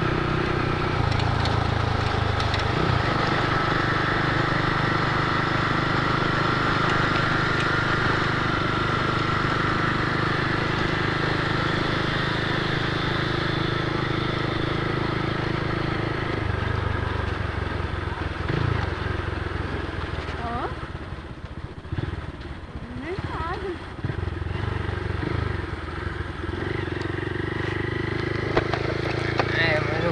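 Honda motorcycle engine running steadily at riding speed on a dirt road, heard from the rider's own bike with road and wind noise. About 16 seconds in the engine note shifts lower. Between about 20 and 26 seconds the sound falls away as the bike slows, then it picks up again near the end.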